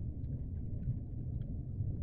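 Low, steady rumbling background ambience, with a few faint scattered ticks above it.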